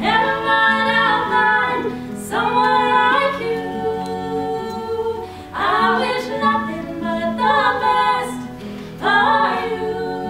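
Female vocals singing a song in phrases, with pauses about two, five and a half and nine seconds in, accompanied by an acoustic guitar.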